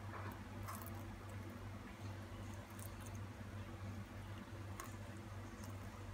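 Coffee poured in a thin stream onto vanilla ice cream in a glass: a faint trickle with a few light clicks, over a steady low hum.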